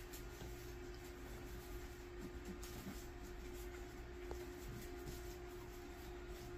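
Faint rustling and scratching of a roller bandage being wrapped around a forearm as a pressure dressing, over a steady low room hum.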